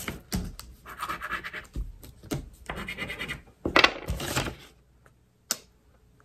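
Scratch-off lottery ticket being scratched in a run of short, uneven strokes that stop about four and a half seconds in, followed about a second later by a single click.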